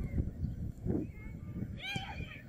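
High-pitched shouts during open-air football play, with a burst of shrill calls near the end, over a low rumble.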